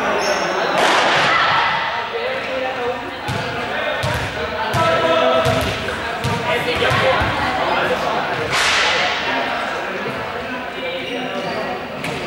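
Several students' voices chattering and calling out, echoing in a large sports hall, with a ball bouncing on the court floor a number of times.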